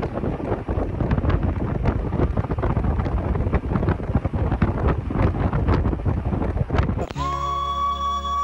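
Wind buffeting the microphone over the low rumble of a moving car, loud and uneven. About seven seconds in it cuts to music with a long held high note.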